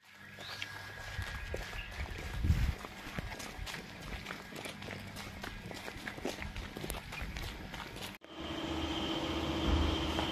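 Footsteps and knocks from a hand-held phone while walking, a run of scattered short clicks. About eight seconds in the sound cuts off suddenly and a steady machine hum with a high whine takes over.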